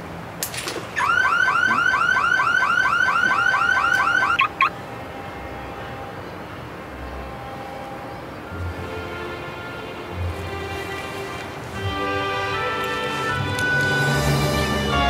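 An electronic warbling alarm, like a car alarm: a rapidly repeating rising tone, about five sweeps a second, sounds for about three and a half seconds and then cuts off suddenly. Soft music fades in afterwards and grows louder near the end.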